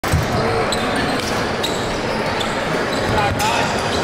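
Basketballs bouncing on a gym's hardwood court amid general gym noise, with voices talking in the background.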